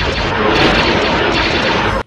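Space-battle sound effects from a film clip: starfighter laser blasts amid explosions, a loud dense din that cuts off abruptly at the end. The laser blasts were made by striking a radio-tower guy wire with a hammer, so their high frequencies arrive before the low ones, a sound of dispersion.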